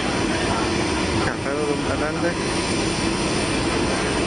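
Steady loud roar of aircraft engine noise at an airport, with a few brief voices about a second in.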